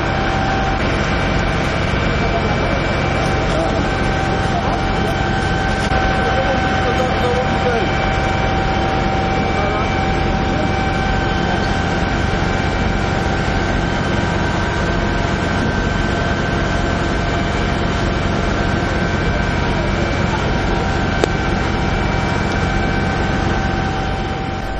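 Emergency vehicles' engines and equipment running at a standstill: a steady loud drone with a constant high whine over it.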